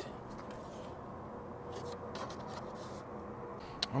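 Quiet background hum with a few faint clicks and taps from the loose plastic front grille being handled at its broken top tabs, and one sharper click just before the end.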